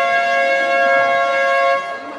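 Basketball game horn: one loud, steady two-note blast about two and a half seconds long, cutting off near the end.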